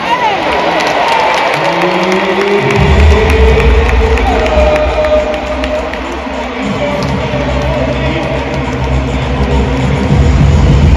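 Music playing over an indoor stadium's sound system, with held notes and a heavy bass that comes in about three seconds in, over the noise of a large crowd cheering.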